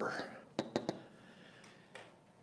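A few quick, sharp clicks between half a second and a second in, typical of a dry-erase marker tapping against a whiteboard; the rest is faint room tone.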